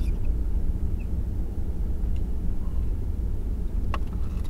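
Steady low rumble of a vehicle driving slowly on a snow-covered road, heard from inside the cab: engine and tyre noise. A single sharp click right at the end.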